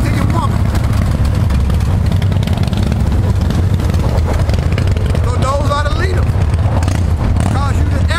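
A steady low mechanical rumble, with a man's voice speaking briefly twice in the second half.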